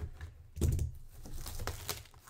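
Hands handling and opening a cardboard product box: a loud knock about half a second in, then a quick run of clicking taps.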